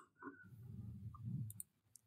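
A quiet pause in video-call audio: a faint low murmur with a few small clicks late in the pause, then the sound cuts out to dead silence just before speech resumes.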